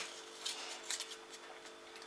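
Quiet room with a faint steady hum and a few soft clicks and rustles of handling, about half a second and a second in.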